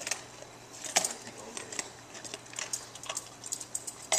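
A dog crunching dry cat food and nosing at the last pieces in a plastic container, making a string of irregular clicks and crunches.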